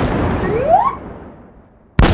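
A loud boom-like burst, an edited explosion-style sound effect, that dies away over about a second and a half. A short rising tone sounds about half a second in.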